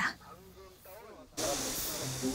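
Faint voices, then about a second and a half in a steady, even outdoor hiss starts abruptly, strongest in the high range.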